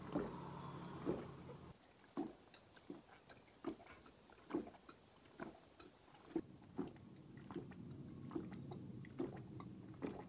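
A man chugging a glass of stout, swallowing in steady gulps a little more than once a second.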